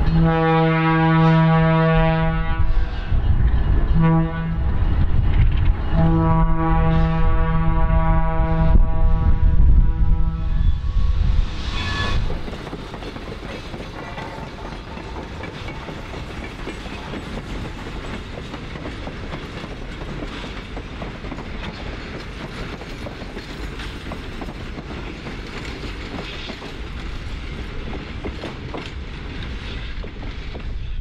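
Alco diesel locomotive horn sounding a long blast, a short one and another long blast over the rumble of the passing locomotives. After about twelve seconds the horn stops and loaded ore cars roll past with a steady rumble and faint clacking of wheels on rail joints.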